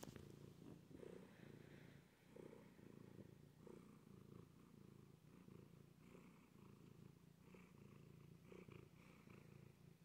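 Domestic cat purring steadily while being stroked on the head, a faint, close rumble that swells softly about once a second.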